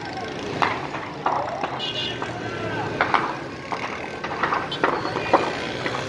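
Several people's voices talking and calling out over a steady street background, with a short high tone about two seconds in.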